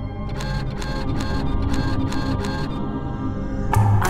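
A rapid run of camera shutter clicks, about five a second, over background music, stopping a little past halfway.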